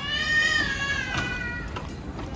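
A toddler's single long, high-pitched squeal that rises and then slowly falls in pitch, fading out shortly before two seconds.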